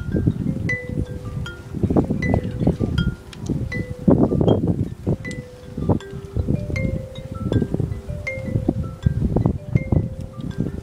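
Marching band's mallet percussion playing a chiming passage of short, ringing high notes over longer held notes, with an irregular low rumble underneath.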